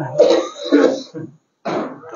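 A man clearing his throat and coughing close to a microphone, in a few rough bursts over about a second.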